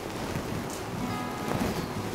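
Soft rustling of silk sari fabric being handled, with faint music underneath.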